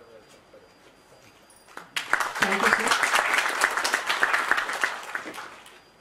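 Audience applauding. The clapping starts suddenly about two seconds in, holds for about three seconds and dies away near the end.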